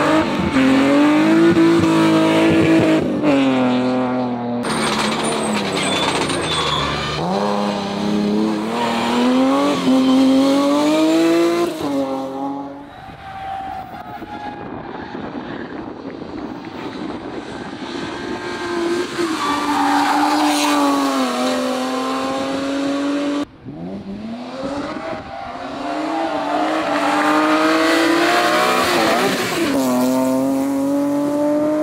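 BMW E30 and E36 hillclimb race cars' engines revving hard through corners, the pitch climbing and dropping again and again with throttle and gear changes, with some tyre squeal. Several separate passes are cut together, with abrupt breaks between them.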